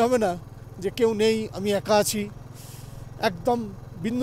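A motorcycle engine running at a steady pace under way, a low even drone throughout, with a man talking over it in several short phrases.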